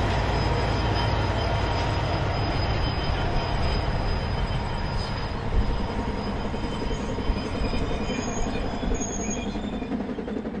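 Train running past, a steady deep locomotive rumble, with a couple of short high squeals near the end.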